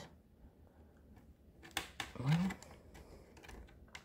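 Faint clicks and light plastic handling of fingers working the latches of a ribbon-cable connector on a TV power board, with one sharper click a little under two seconds in.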